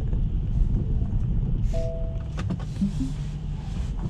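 Low steady rumble inside a Tesla's cabin as it backs slowly across a snowy lot. A short two-note electronic chime sounds about two seconds in, followed by a couple of clicks.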